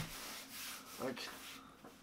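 Soft rubbing and rustling of hands handling a mirrorless camera, starting with a small click.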